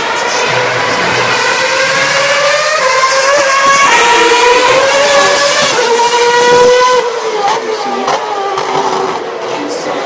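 Formula One car's V8 engine at high revs, accelerating hard: its pitch climbs, drops back at each gear change and climbs again several times, growing louder and then falling away suddenly about seven seconds in.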